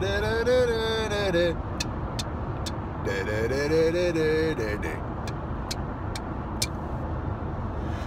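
A man singing two long, wavering held notes of a birthday song, the second starting about three seconds in, over the steady low rumble of a car on the road. A few sharp ticks come between and after the notes.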